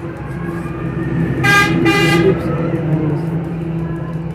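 Two short honks of a vehicle horn in quick succession, over a steady low hum.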